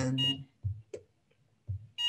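Benchtop LCR meter beeping as its mode is switched: a short high electronic beep just after the start and another near the end, as the meter changes from resistance to inductance mode. Soft handling knocks come between the beeps.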